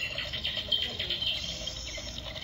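Battery-powered skeleton bat Halloween decoration playing its sound effect after the button on its spine is pressed: a high, rapidly fluttering chitter through its small speaker.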